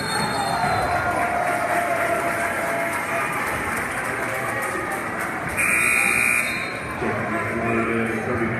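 Gym scoreboard buzzer sounding once for about a second, over steady crowd noise and voices from the stands.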